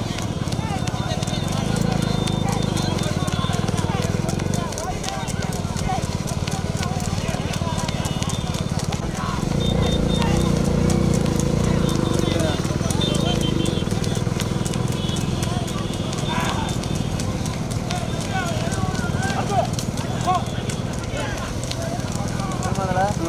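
A running bull's hooves clopping on a dirt road, over the steady running of motorcycle engines close behind, with men shouting at intervals.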